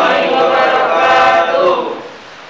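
A class of students answering together in unison, drawn out almost like a chant: the reply to the closing greeting "Assalamualaikum warahmatullahi wabarakatuh". The voices trail off shortly before the end.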